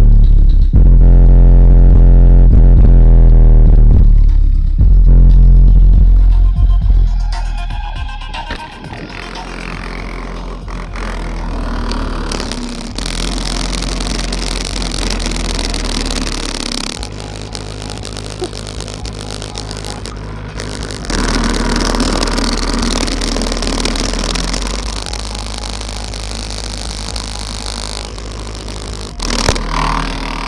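Bass-heavy electronic music played very loud through car-stereo subwoofers, recorded close to the subs, so the deep bass distorts badly. About eight seconds in the heavy bass falls away and the music carries on at a lower level. Near the end there is a clatter as the phone knocks against the boot.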